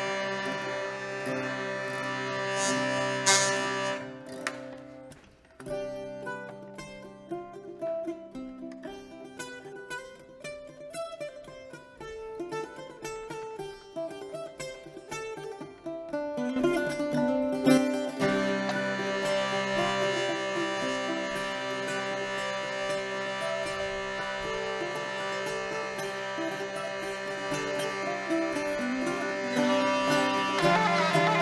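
Hurdy-gurdy and plucked string instrument playing a polska together. The sustained droning sound drops out about four seconds in, leaving a quieter passage of short, separate notes, and the full drone returns at around sixteen seconds.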